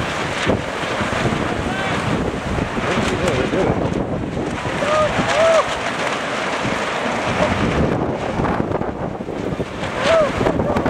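Wind buffeting the microphone, a steady rushing noise, with short voices calling out about halfway through.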